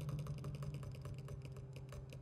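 Grand piano played as a fast run of short, dry, clicking notes, about a dozen a second, over a held low note, getting sparser and softer toward the end.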